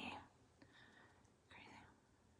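Near silence, broken by a woman's faint whispering.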